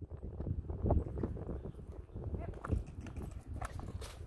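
Hoofbeats of a horse ridden over grass toward a jump: a run of dull, uneven thuds.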